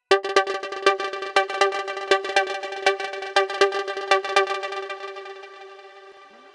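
GForce Oberheim SEM software synthesizer playing its "Feed The Soul" sequencer preset: a fast run of short plucky notes on one steady pitch, about four strong notes a second, fading away near the end.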